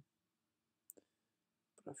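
Near silence: room tone with one faint short click about a second in, then a man starts speaking near the end.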